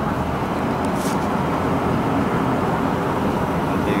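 Steady running noise of a moving car, heard from inside the cabin.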